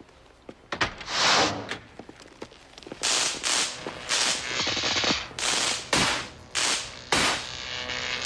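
A series of loud, sharp bangs and crashes with reverberation: one longer burst about a second in, then from about three seconds on an irregular run of bangs coming several to the second.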